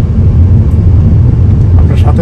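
Steady low rumble inside a moving Hyundai car's cabin: road and engine noise while driving.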